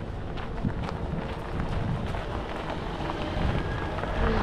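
Hybrid sedan rolling across a gravel lot, with scattered crunches from its tyres on the stones, under steady wind buffeting the microphone.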